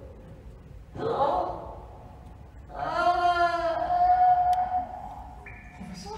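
A performer's voice on a live theatre stage: a short exclamation about a second in, then a long drawn-out vocal cry that wavers in pitch and then holds steady for nearly two seconds.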